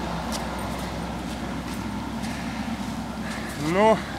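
Slavutich KZS-9-1 combine harvester's engine running steadily with a low hum while the machine stands with its header lowered.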